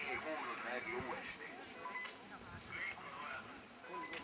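Indistinct background chatter of several spectators talking at once, with no clear words.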